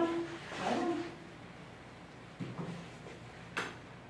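A brief wordless vocal sound in the first second, then a soft knock and, near the end, a single sharp click of mini nail clippers closing during a dog's foot trim.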